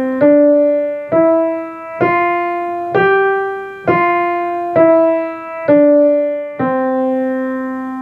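Piano played one note at a time in an even beat of about one note a second: single quarter notes stepping up from D to G and back down, then a final middle C held for four beats as a whole note. Each note strikes and fades before the next.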